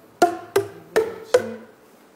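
Tuned plastic percussion tubes, handmade by cutting plastic cylinders to length, struck one after another to play an ascending scale. Four quick notes, each a short hollow pitched tone, rising step by step.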